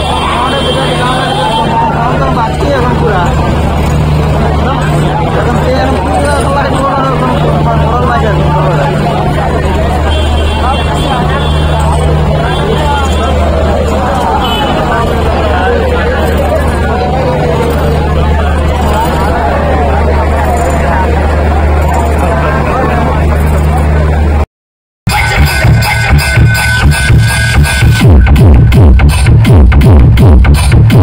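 Loud music from a large DJ speaker stack: a voice line over a heavy, sustained bass. Near the end the sound cuts out for a moment, and a fast, pounding electronic dance beat starts.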